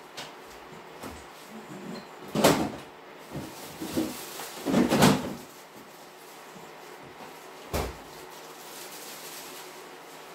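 Knocks and clatters from a cupboard door and things being handled away from the microphone, loudest around two and a half and five seconds in, then a single sharp thump near eight seconds.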